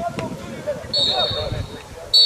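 Players and spectators shouting across a football pitch, with a referee's whistle blown in one long blast, about a second long, starting halfway through.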